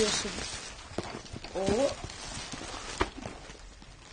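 Plastic gift bag rustling as a child pulls a boxed construction toy out of it, with a few sharp taps from the box being handled and a brief child's voice in the middle.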